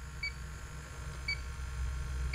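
Inficon D-TEK Stratus refrigerant leak detector giving short, even beeps about once a second over a low steady hum. The beeping stays at its slow idle rate with the probe held over a leaking test vial: the detector is not picking up the leak.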